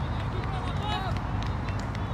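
Distant shouting voices on an open football pitch over a steady low rumble of wind on the microphone, with a few short sharp clicks about halfway through.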